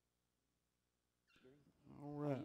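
Near silence, then a faint voice starts up about a second and a half in.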